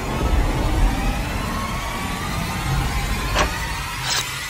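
Produced sound-effect bed of deep rumbling with faint slowly rising tones, broken by a sharp crack about three and a half seconds in.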